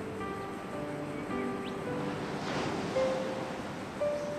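Soft background music of held, sustained notes that shift from chord to chord, with a gentle wash of noise that swells and fades about two and a half seconds in.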